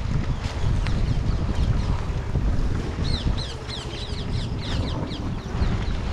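Wind buffeting an action-camera microphone on a moving bicycle, a steady low rumble. About halfway through, a bird gives a quick series of short, high, falling chirps.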